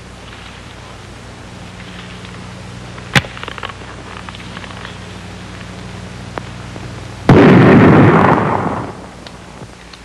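A single shot from an old-time squirrel rifle about seven seconds in: a loud, sudden report that dies away over about a second and a half. A sharp click comes about three seconds in, and a steady low hum runs under everything.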